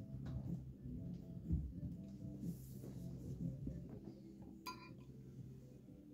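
Low steady room hum with faint handling noises, and a single short ringing clink about three-quarters of the way through.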